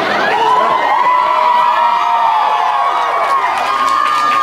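Audience cheering and whooping in a club.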